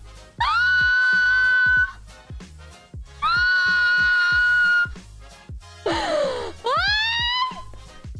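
A woman's high-pitched screams: two long, steady screams of about a second and a half each, then a shorter cry that dips and rises near the end, over background music with a steady beat.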